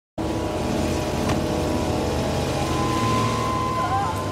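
A car driving along a road, with engine and road noise, and film music underneath. A steady high tone grows stronger in the last second.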